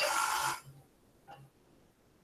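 A man's breathy exhale as his speech trails off, cut off after about half a second, then near silence with one faint short voice sound a little over a second in.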